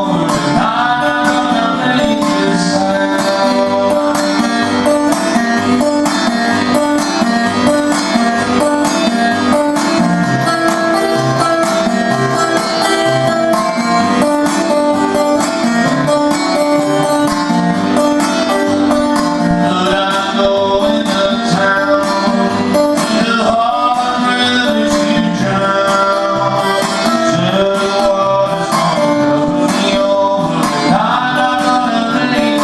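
Steel-string acoustic guitar played solo in a steady picked country-blues pattern, an instrumental break with no lyrics sung.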